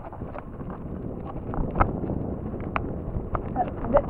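Mountain bike rattling and knocking over loose, rocky dirt on a steep descent: tyre rumble with scattered sharp clicks from the bike and stones, getting louder as it picks up speed. Wind buffets the camera microphone.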